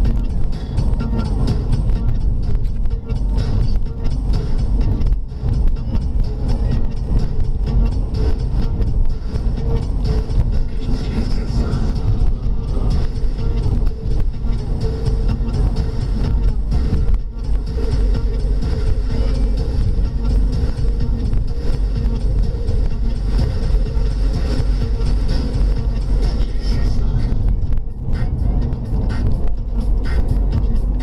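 Inside the cabin of a moving Alfa Romeo 159: steady low engine and road rumble, with music playing over it.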